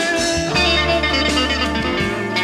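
Electric guitar playing a lead line with band accompaniment, over a low note held from about half a second in.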